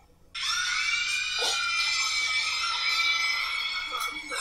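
A long, high-pitched scream from a female anime character, starting after a brief silence and held for about three and a half seconds.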